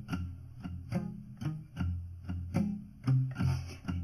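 Blues guitar accompaniment between sung lines: a steady rhythm of plucked notes over a low bass line.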